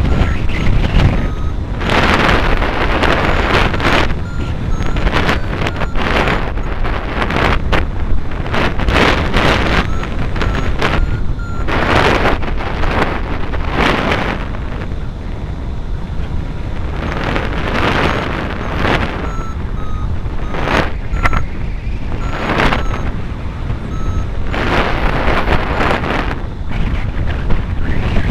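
Airflow buffeting the microphone in surging gusts during a hang-glider flight, with faint short beeps from the glider's variometer repeating through it, the tone a variometer gives when the glider is climbing.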